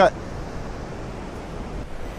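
Steady rushing noise of wind and ocean surf on an open beach, even in level, with no distinct events.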